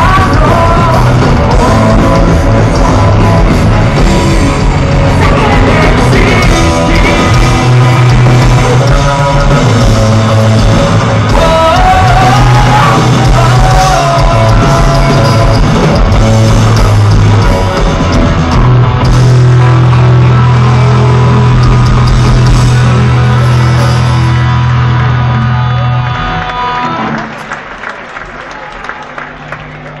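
Live punk rock band playing loud: distorted electric guitars, bass and drums. A long held closing chord rings out in the last third and stops a few seconds before the end, and the level drops as the song finishes.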